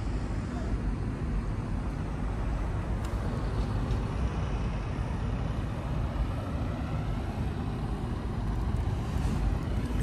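Steady low outdoor rumble with an even, unbroken level and no distinct events.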